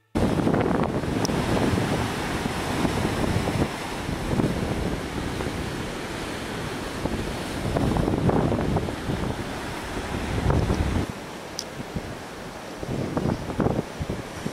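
Ocean surf breaking and whitewater rushing, with wind buffeting the microphone. The surf swells louder several times and eases off for a couple of seconds near the end.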